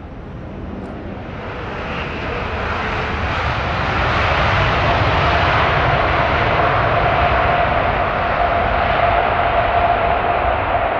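Jet engines of an Emirates Airbus A380 running at high power on the runway: a loud roar that builds over the first few seconds and then holds steady, with a steady whine coming in about halfway through.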